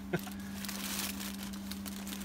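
Soft rustling of a fabric wrench roll and its wrenches being handled, over a steady low electrical hum. A brief laugh right at the start.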